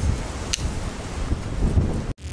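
Wind buffeting the microphone, with one sharp click about half a second in: the Ontario RAT Model 1 folding knife's blade flicked open and snapping into its liner lock.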